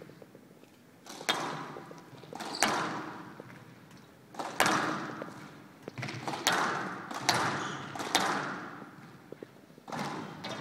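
Squash rally: the ball cracks sharply off rackets and the court walls, one crack every second or two, each ringing on in the hall's echo. The first comes about a second in, when the serve is struck.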